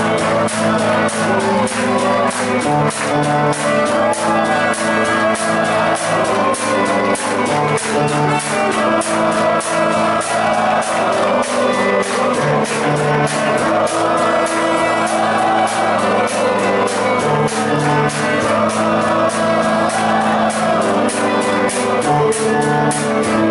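Live rock band playing loud through a club PA: a drum kit keeping a steady, driving beat under held bass notes and electric guitars.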